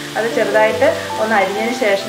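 Melodic background music with held low notes, over sliced onions and carrot strips sizzling in a frying pan as a wooden spoon stirs them.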